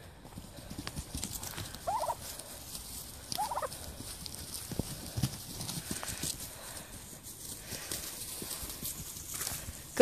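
Domestic turkeys calling: two short calls about a second and a half apart, over light scuffling and rustling as the flock is moved about on straw-covered ground.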